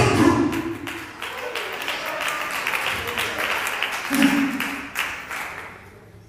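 Hand clapping in a church: rapid, irregular claps, with a short low voice note about four seconds in, dying away near the end.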